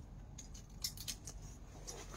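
Faint, scattered light clicks and rustles of a draped saree being handled and adjusted by hand, a handful of sharp little ticks in the second half.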